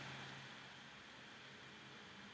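Near silence: faint steady hiss of room tone with a faint low hum.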